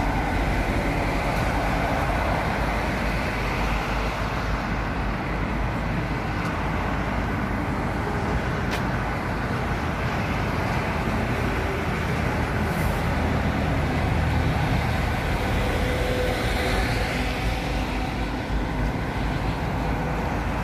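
Steady motorway traffic noise, an even rush of passing cars and trucks at a constant level.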